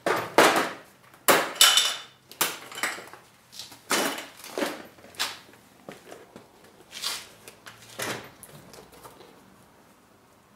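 A plastic Tactix organiser case full of bolts and washers being slid out of its cabinet, handled and set down with its lid opened. The result is a run of irregular plastic clacks, knocks and scrapes, busiest in the first few seconds.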